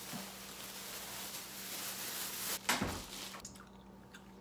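Plastic bag rustling and crinkling as wet, bleach-dyed shirts are handled and pressed into it, with a single thump about three-quarters of the way through; the rustling stops shortly after.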